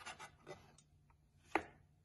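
Knife slicing through brown mushrooms and tapping a wooden cutting board: a few light taps, the clearest about one and a half seconds in.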